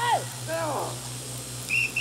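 A few short rising-and-falling voice calls, then a brief high steady whistle-like tone near the end, over a low electrical hum on an old TV soundtrack.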